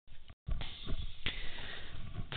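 A person drawing a breath in sharply through the nose close to the microphone, over steady hiss, with a single click just over a second in.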